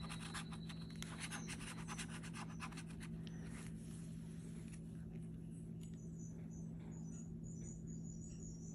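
Metal bottle opener scraping the coating off a scratch-off lottery ticket in quick, rapid strokes for the first three or four seconds, tailing off into a softer scrape and then stopping. A steady low hum runs underneath.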